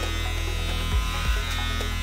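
Wahl Senior electric hair clippers buzzing steadily while cutting hair over a comb.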